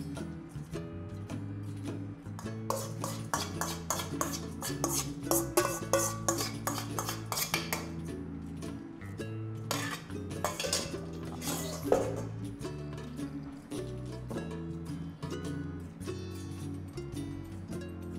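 Stainless steel mixing bowl and kitchen utensils clinking and clattering against a glass baking dish, in a busy run of clinks from about three seconds in until about twelve seconds, over steady background music.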